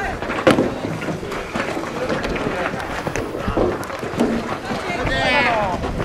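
Young players' voices shouting calls across a baseball field during fielding practice, with one long high-pitched shout near the end. A sharp knock sounds about half a second in.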